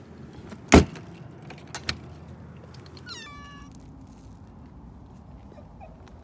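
A door shuts with a loud bang about a second in, followed by a softer click. About three seconds in, a cat meows once, a short high call.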